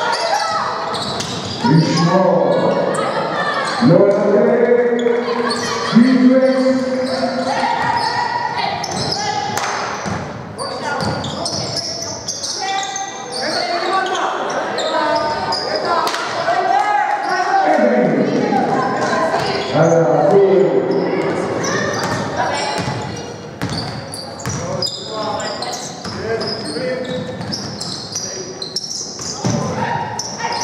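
Live basketball play in an indoor gym: a basketball bouncing on the hardwood court amid the shouts and calls of players and coaches. The voices are loudest in the first several seconds and pick up again around the middle.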